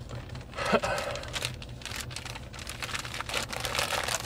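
Plastic mailer package crinkling and rustling in the hands, a run of small irregular crackles, over a steady low hum.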